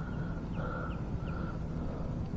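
A faint animal call: several short, falling chirps over a steady low outdoor rumble.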